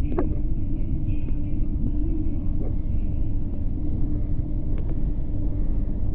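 Fujitec escalator running, heard from its moving handrail: a steady low rumble with a faint even hum and a few faint clicks.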